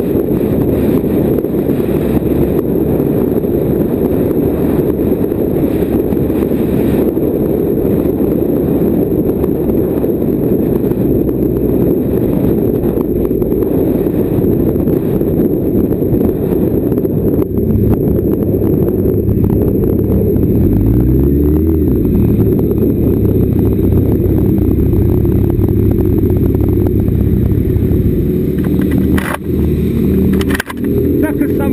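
Wind rushing over the camera microphone on a moving sport motorcycle, with its engine running underneath. In the second half the engine's note comes through more plainly as the bike slows, rising briefly about two-thirds of the way through, and there are a few knocks near the end.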